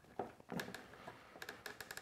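Faint small clicks and scratching of a plastic wire nut being twisted onto stranded copper wires, with a quick run of ticks in the second half.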